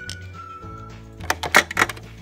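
Electronic music and sound effects from a Paw Patrol Lookout Tower toy's sound unit, with held tones. A few sharp plastic clicks come about a second and a half in as the toy and its vehicle are handled.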